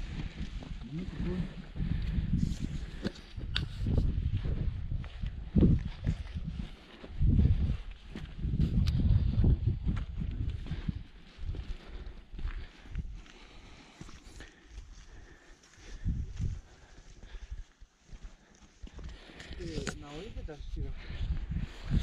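Wind buffeting the camera's microphone in irregular gusts of low rumble, over footsteps on a rough dirt and stone trail.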